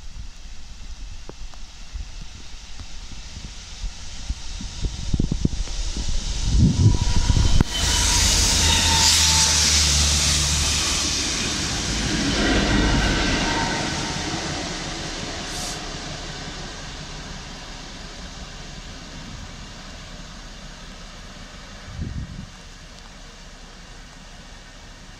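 Rail head treatment train hauled by Class 66 diesel locomotives passing close beneath. It builds as it approaches and is loudest about eight seconds in, with a steady diesel engine note and a loud hiss from the high-pressure water jets that clean the railheads. The tank wagons then rumble past and the sound fades as the train draws away.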